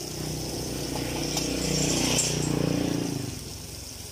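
A motor vehicle's engine passing close by, growing louder to a peak about two seconds in and then fading away.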